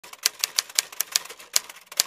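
A run of sharp, irregular key clicks like typing, about four a second.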